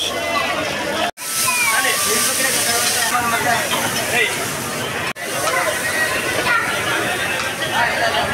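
Voices chattering, with a steady hiss from a hot cast-iron dosa griddle as it is wiped and scraped down. The sound drops out briefly twice.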